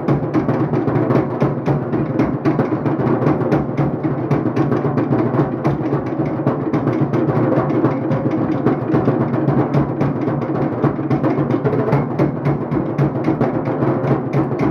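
Loud, fast drum music with a steady, driving rhythm that plays on without a break, accompanying a fire dance.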